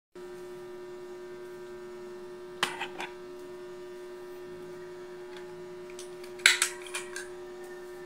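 Steady electrical mains hum, with two short clicks about two and a half to three seconds in and a louder click followed by a smaller one about six and a half seconds in.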